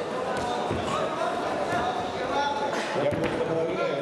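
Voices of coaches and spectators calling out in a large, echoing sports hall, with a thud about three seconds in as a wrestler is taken down onto the mat.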